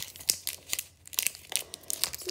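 Foil wrapper of a Pokémon TCG booster pack being torn open and crinkled in the hands: a run of sharp crackles with a short lull about halfway.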